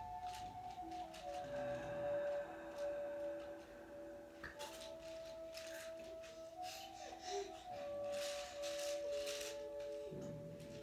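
Soft background music: a slow melody of long held notes that step from one pitch to the next.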